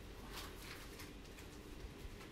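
Faint rustling and brushing of a Vive tracker's strap being twisted around the wearer's arm, with a couple of soft scrapes in the first second over a low hum.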